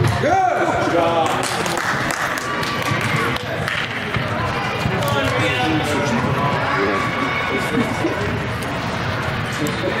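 Indoor soccer game in a large echoing sports hall: players and onlookers calling out, with ball kicks and thuds on the turf.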